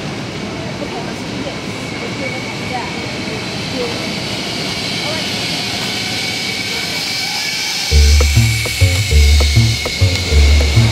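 Zipline trolleys whirring steadily along the steel cables as riders go by, with faint voices of people in the background. About eight seconds in, background music with a deep bass line comes in.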